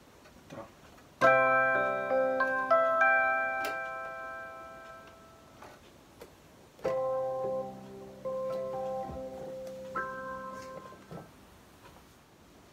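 Casio keyboard's piano voice: a chord struck about a second in that rings and slowly fades, then a second chord just before the middle with a note or two added, fading out again before the end.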